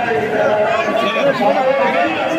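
A dense crowd of men talking and calling out all at once, a loud, steady chatter of many overlapping voices.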